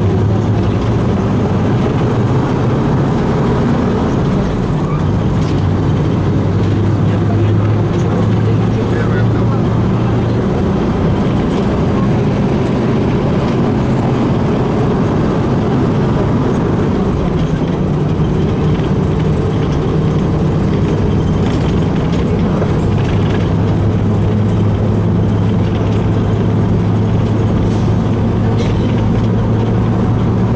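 LAZ-695N bus's petrol V8 engine running under way, heard inside the cabin with road and body rattle noise. The engine note weakens about ten seconds in and strengthens again a little after twenty seconds.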